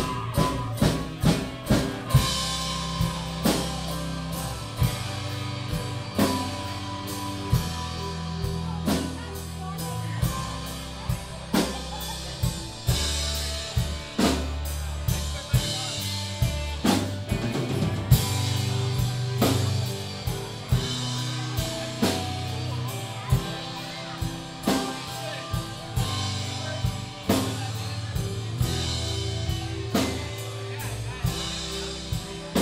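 Live country-rock band playing an instrumental passage: drum kit with regular hits, a quick run of hits near the start, under guitars and keyboard.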